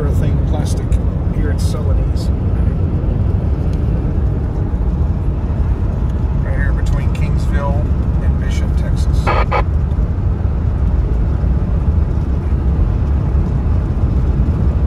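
Steady low rumble of road and engine noise heard from inside a car driving at highway speed.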